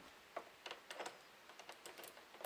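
Faint, light clicks over near silence, about half a dozen scattered through two seconds.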